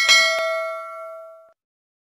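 A bright bell-like ding sound effect, a ringing chime that fades out over about a second and a half, with a short click about half a second in.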